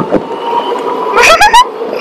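A person laughing, high-pitched, with the loudest burst near the end, over the steady hum and running noise of a moving resort buggy.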